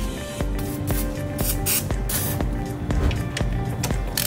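WD-40 aerosol spray hissing in a few short bursts, over background music.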